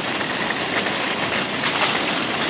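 Metal shopping cart rolling over parking-lot asphalt, its wheels and wire basket rattling steadily.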